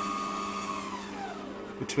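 Chester DB8VS variable-speed bench lathe running with a steady whine, which falls in pitch from about a second in as the speed knob is turned down and the spindle slows to about 200 rpm.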